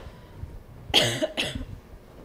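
A woman coughing twice into a podium microphone: two short coughs about half a second apart.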